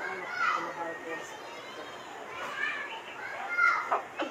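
Children's voices calling and chattering in the background, in short bursts with gaps between.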